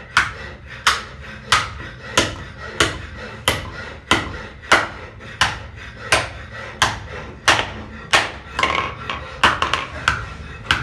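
Hand hammer striking a brick mold's metal-and-wood frame on a steel anvil block, in a steady rhythm of about three blows every two seconds, each with a short metallic ring.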